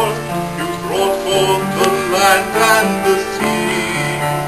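A man singing a slow song over instrumental accompaniment, with held low notes that change about once a second underneath.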